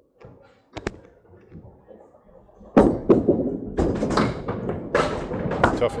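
A sudden loud clatter of candlepins and wooden deadwood knocking together at the pin end of the lanes, starting about three seconds in: many sharp knocks and thuds in quick succession.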